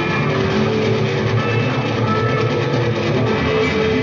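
Green Stratocaster-style electric guitar played through an amplifier, with a dense, full sound and held notes that ring on for up to about a second at a time.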